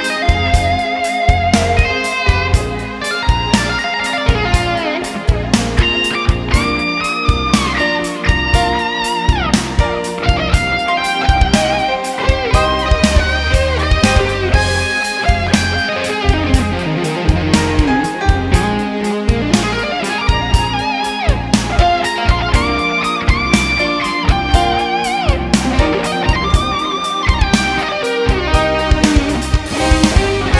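Instrumental break of a pop-rock song: an electric guitar plays the melody with bent and wavering notes over steady bass and drums.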